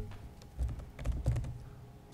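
Scattered light clicks and taps with a few soft low thumps, picked up by tabletop microphones.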